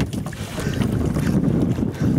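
Wind noise on the microphone aboard a small open boat on choppy sea: a steady, low rushing noise.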